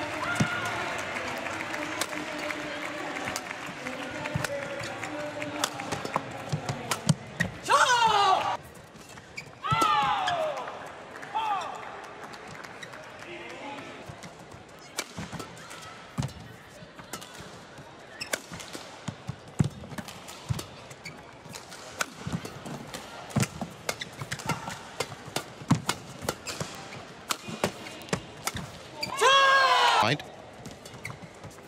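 Badminton rally in an arena: a run of sharp cracks as rackets strike the shuttlecock, broken by a few short, loud, falling squeals about eight to twelve seconds in and again near the end, with crowd noise at the start.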